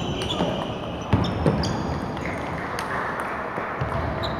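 Table tennis balls clicking off bats and tables, a few sharp irregular hits in the first second and a half, over a background murmur of voices from a hall where several matches are being played.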